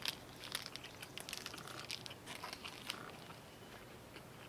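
Close-up chewing of a mouthful of soy-flavoured chicken steak with the mouth closed: faint, irregular soft clicks and smacks, thinning out in the last second.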